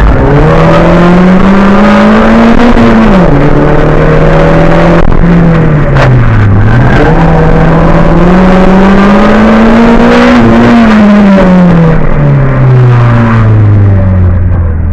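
Race car engine heard from inside the cabin, very loud: it revs up, drops back, dips low about halfway through, then climbs again before falling steadily toward idle as the car slows near the end. A single sharp knock sounds about six seconds in.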